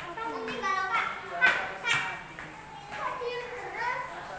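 Children's voices talking and calling out, high-pitched and lively, loudest about a second and a half in.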